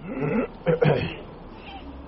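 A man's voice making two short vocal sounds in quick succession, each under half a second, the first rising in pitch. No words are recognisable.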